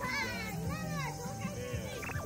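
Young children's voices: high-pitched vocalizing and chatter that glides up and down in pitch.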